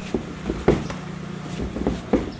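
A handful of sharp thuds and slaps from Muay Thai kicks landing on shin guards and being caught, and feet on the ring canvas, the loudest about two-thirds of a second in. A steady low hum runs underneath.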